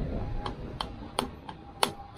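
Hammer tapping on a screwdriver set against the edge of the old prop shaft seal inside a MerCruiser Bravo 3 bearing carrier, driving the seal out: four sharp taps, the last two loudest.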